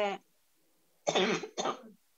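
A woman clearing her throat with two short coughs, about a second in.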